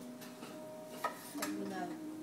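A kitchen knife cutting asparagus on a wooden cutting board, with one sharp knock of the blade on the board about halfway through. Low voices sound faintly in the background.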